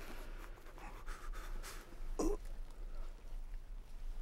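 A man breathing heavily, with one short voiced gasp about two seconds in.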